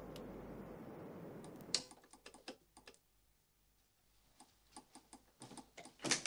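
A faint steady car-engine hum for about the first two seconds, then a sharp click and faint, irregular typing clicks: sparse at first, a gap of about a second, then quicker near the end.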